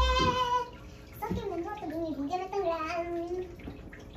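A young girl's voice in long held notes: one steady note ending under a second in, then after a short gap a second, wavering note lasting about two seconds. A brief low thump comes at the very start.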